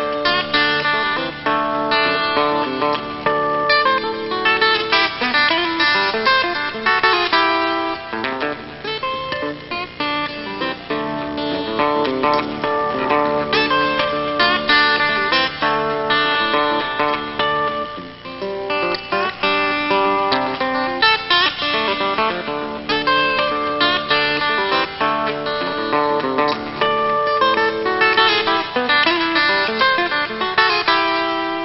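Acoustic guitar played solo: an instrumental piece of ringing chords and runs of plucked notes.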